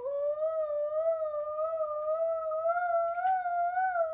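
A small boy's voice holding one long high note that wavers a little and slowly creeps up in pitch, his imitation of a fire-truck siren.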